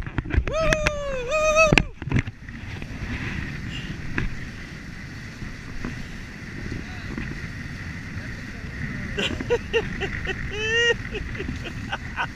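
Water rushing and splashing along the hulls of a Prindle 18-2 catamaran sailing fast, with wind on the microphone. A man whoops and laughs in the first two seconds and again near the end.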